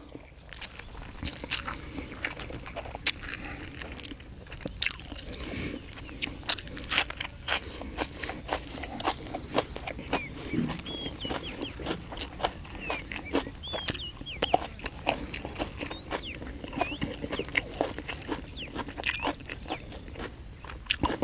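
A person chewing close to the microphone, eating rice noodles in green curry with fresh vegetables, with many crisp crunches and wet mouth clicks at an uneven pace.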